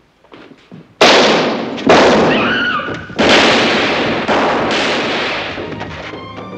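A burst of revolver gunfire in a western film soundtrack: five shots in under four seconds, each ringing out with a long echoing decay. The first three are the loudest.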